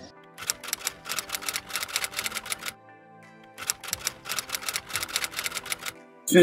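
Typewriter key-clack sound effect for an on-screen title: two runs of rapid clacks, roughly eight a second, with a short pause between them, over faint background music.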